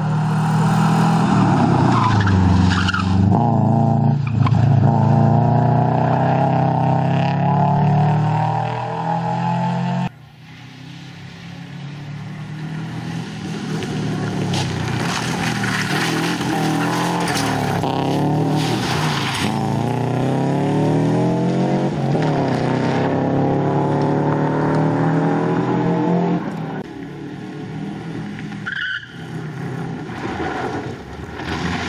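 Subaru Impreza rally car's flat-four engine revving hard as it accelerates through the gears, its pitch climbing and dropping back at each gear change, with tyres skidding on the loose surface. The sound breaks off abruptly about a third of the way in and builds up again.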